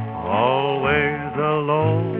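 Old western string-band recording: a voice sings a wavering, gliding line with no clear words over steady band accompaniment. The sound is thin, with no treble, as on an old record.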